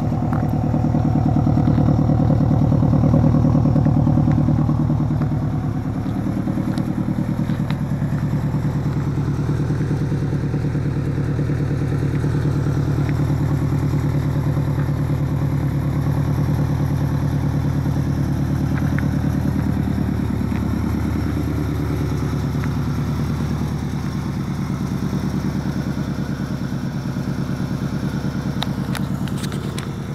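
Subaru WRX's flat-four engine idling steadily, a little louder in the first few seconds.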